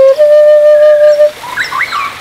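Flute playing a slow melody: one clear note held for about a second that fades out, followed near the end by a few short rising bird chirps.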